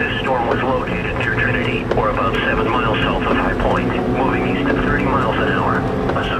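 A person's voice, with no words that can be made out, over a steady low hum.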